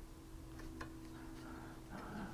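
Faint light taps of a watercolour brush dabbing on paper, a couple close together a little under a second in, over a low steady room hum.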